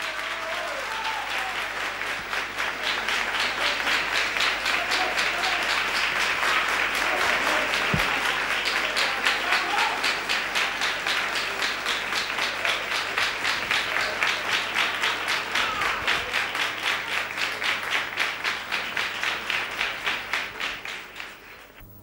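Audience applauding, the clapping swelling and settling into an even, rhythmic beat before fading away near the end.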